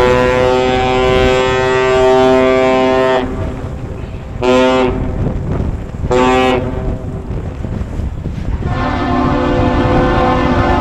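Ship's horn giving the master's salute: one long blast of about three seconds, then two short blasts. Near the end a second, differently pitched horn starts up, the lift bridge's answering salute. Wind rumbles on the microphone throughout.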